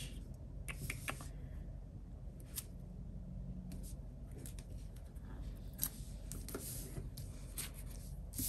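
Washi tape being cut into small pieces and pressed onto paper planner pages: a scattering of soft clicks, snips and rustles.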